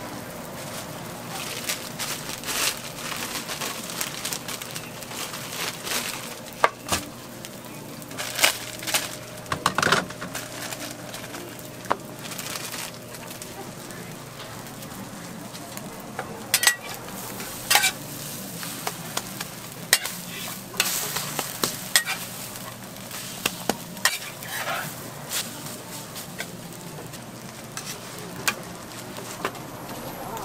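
Egg-and-vegetable patties frying on a flat-top griddle, with a steady sizzle broken by frequent sharp crackles and clicks.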